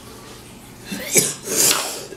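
A man coughs harshly and blows out a breath after a hit of cannabis shatter from a small glass dab rig. The first second is quiet; the cough starts abruptly about a second in, followed by a hissing exhale.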